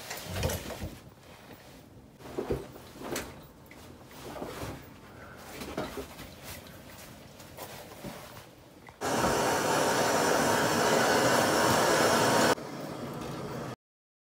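Scattered light knocks, clicks and rubbing as a newly hung combi boiler and its front casing are handled and the casing is taken off. About 9 s in, a loud, steady rushing noise takes over. It drops in level about three and a half seconds later and then cuts off.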